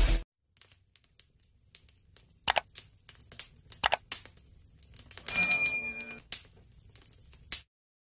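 Sound effects of a subscribe-button animation: two sharp mouse clicks, then a short bright bell chime, then a few fainter clicks.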